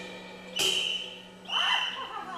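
Contemporary chamber music for voice, harp and percussion: two sharp struck percussion notes about a second apart, each ringing briefly with a high tone. The second is joined by sliding, bending pitches.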